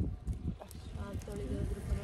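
Low, uneven rumble of wind buffeting a phone microphone, with faint voices talking in the background from about one second in.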